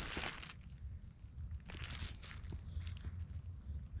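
Faint, scattered rustling and crunching of dry leaves, a few soft crackles over a steady low rumble.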